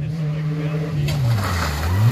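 Rally car engine at speed, its note dropping steeply about halfway through as the car slows into a corner.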